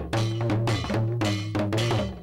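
Opening theme music of a TV news bulletin: a percussive beat of about two strikes a second over a held bass note and a short repeating melodic figure.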